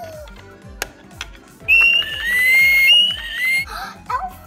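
A loud, high-pitched whistle starting a little under two seconds in and held for about two seconds, with a short break and a slight rise in pitch, over background music with a steady beat. A couple of light taps come before it.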